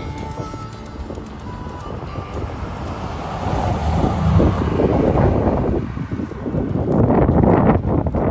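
The end of a song fades out in the first two seconds. Then a 1969 Chrysler's V8 and tyres grow louder as the car passes close by on the highway, with wind buffeting the microphone. The sound dips about six seconds in and is loudest near the end.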